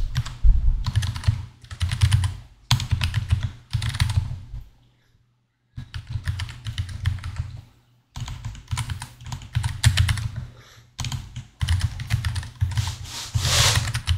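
Rapid typing on a computer keyboard in runs of quick keystrokes, broken by brief pauses, the longest about five seconds in.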